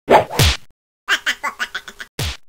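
Cartoon fight sound effects: two sharp hits with a falling pitch, then a rapid run of about eight short strokes about a second in.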